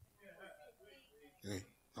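A quiet pause in speech: a faint voice murmurs in the room, then there is one short vocal sound, like a hiccup or a clipped grunt, about one and a half seconds in.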